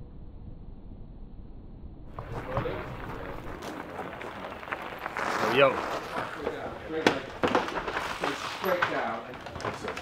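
Outdoor background bustle: indistinct voices of people nearby, with a few sharp clicks and knocks. It is faint at first and grows busier about two seconds in.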